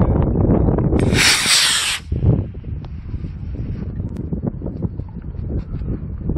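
Wind rumbling on the microphone, then about a second in a B6-4 black-powder model rocket motor ignites and burns with a loud hiss for about a second before cutting off sharply as the rocket lifts off.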